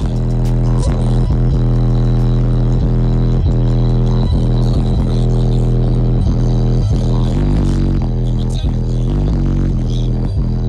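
Bass-heavy music played loud through a car audio system of four DS18 EXL 15-inch subwoofers in a Q-Bomb box, heard inside the cabin, with deep bass notes that hold steady under the beat. The system is tuned to peak around 35–40 Hz.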